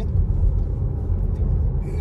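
Steady low rumble of road and engine noise inside the cabin of a VW Tiguan Allspace with a 1.4 TSI petrol engine, driving along.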